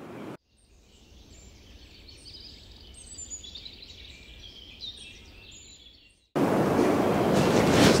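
Faint birdsong, several short chirps and whistles. About six seconds in, a loud steady hiss cuts in abruptly and runs on.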